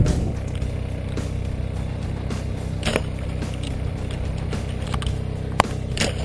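Steady motor drone from the bowfishing boat, an even hum with a constant pitch, with a few light clicks and one sharp click a little before the end.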